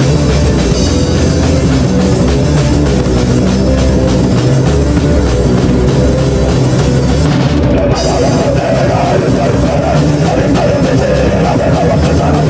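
Punk hardcore band playing live: distorted electric guitar, bass and a drum kit with crashing cymbals, loud and continuous. The cymbals drop out for a moment about two-thirds of the way through.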